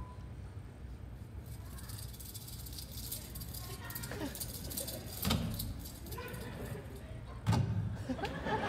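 Live foley sound effects performed to a film clip: rattling and jangling clatter, then two heavy thumps, about five and seven and a half seconds in, under faint film dialogue.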